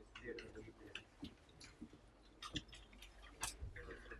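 Faint, irregular clicks from a laptop being operated, a few sharper ones in the second half, over a low murmur of voices in the room.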